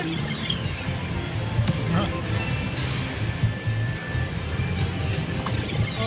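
Entourage video slot machine playing its pick-bonus music and sound effects, with a falling high-pitched sweep at the start, another about three seconds in and a third near the end. The win climbs and the multiplier steps up on screen meanwhile.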